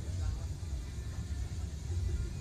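A low, steady rumble with faint voices in the background.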